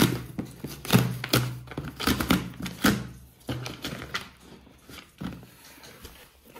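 A parcel being handled and opened by hand: a series of sharp knocks and thumps over the first three seconds, then quieter rustling and handling noises.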